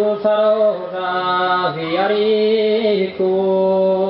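A four-voice Sardinian male vocal group (cuncordu) singing in close harmony. The voices hold sustained chords, sliding down and back up together about halfway through, then break briefly and set in on a new held chord.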